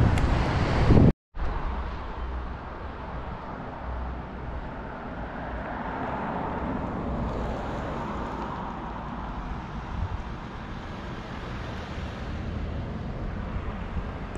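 Steady outdoor noise, mostly wind rumbling on the microphone, with no distinct source standing out. The sound cuts out completely for a moment about a second in.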